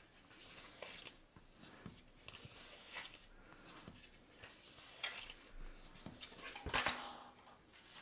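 Cardstock being folded and burnished along its score lines: soft, scattered rubbing and sliding strokes of paper under hand and bone folder, with one brief louder sound near the end.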